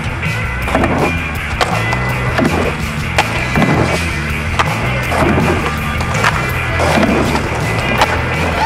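Music track with skateboard sounds mixed over it: wheels rolling on asphalt and the sharp clacks of the board snapping and landing during tricks.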